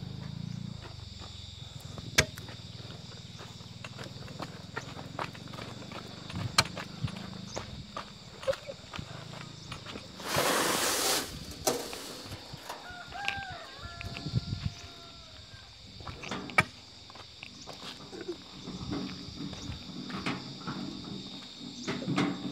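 Steel crowbar levering at a buried rock in dry soil: scattered sharp knocks and scrapes of the bar against stone, with a louder second-long scraping rush about halfway through. Insects buzz steadily underneath.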